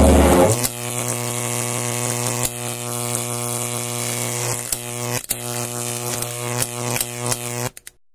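A steady, buzzy electric hum from the soundtrack's sound design, with scattered sharp clicks and crackles. It cuts off suddenly shortly before the end.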